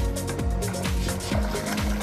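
Electronic background music with a steady drum beat and held synth tones.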